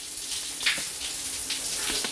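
Shower running: a steady spray of water from the showerhead.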